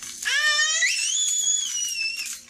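A toddler's excited, high-pitched squeal: a shriek that climbs in pitch, then jumps to a very high note about a second in and holds it.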